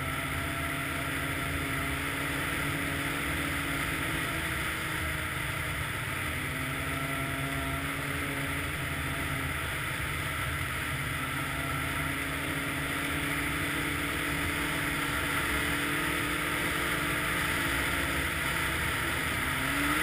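Snowmobile engine running at steady trail-cruising speed, a constant drone whose pitch drifts slightly and rises near the end as the throttle comes up.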